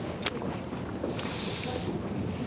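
Steady room noise with a few soft clicks and rustles, the sharpest about a quarter second in and another about a second in.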